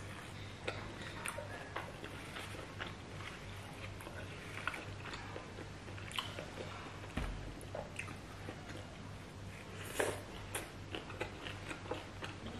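Close-miked chewing and wet mouth sounds of someone eating roast pork by hand, with many short smacks and clicks scattered throughout.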